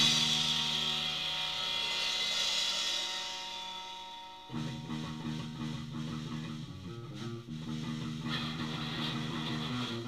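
Rock band rehearsing: a cymbal crash and chord ring out together and fade over about four seconds. About four and a half seconds in, guitar and bass start a quieter, sparser passage with little cymbal.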